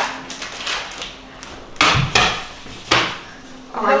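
A metal frying pan and cookware knocking on the hob and plate after a frittata is turned out: three sharp clatters in the second half, the last two under a second apart.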